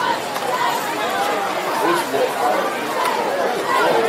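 Crowd chatter at a football game: many voices of spectators and sideline players talking and calling over one another, with no single voice standing out.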